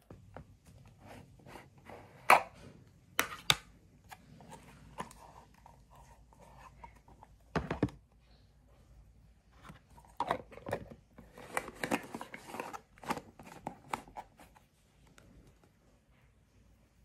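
A plastic tub of Stridex pads being opened and its pads handled: irregular clicks, taps and crinkly tearing. The sharpest clicks come a couple of seconds in, with a busier run of crackles late on.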